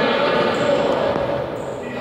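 Echoing sounds of an indoor futsal game in a sports hall: players' indistinct voices calling out over the ball and shoes on the court floor, easing a little near the end.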